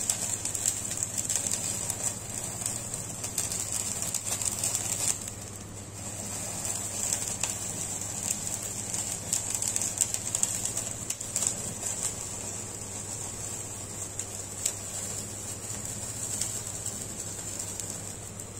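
Gas stove burner flame running steadily with scattered faint crackles as marinated chicken on a skewer chars directly in the flame.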